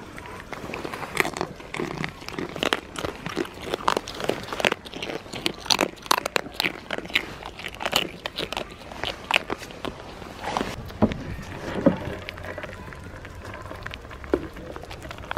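Close-up nibbling and mouthing of goats at the camera: irregular sharp crunching clicks, several a second, with a few heavier knocks about eleven to twelve seconds in.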